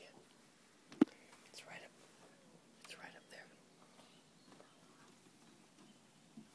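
Soft whispering, with a single sharp knock about a second in.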